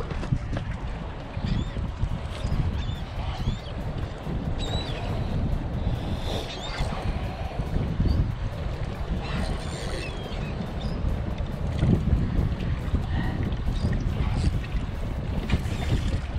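Wind rumbling on the microphone over waves washing against jetty rocks, with a few brief high bird calls in the first half.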